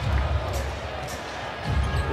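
A basketball dribbled on a hardwood court, with low thuds near the start and again near the end, over a steady arena crowd murmur.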